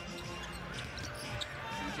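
Game audio from an NBA broadcast: the arena crowd murmuring in a large hall, with a basketball bouncing on the hardwood court.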